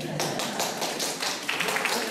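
A small audience applauding: many hands clapping at once, starting a fraction of a second in, with voices talking underneath.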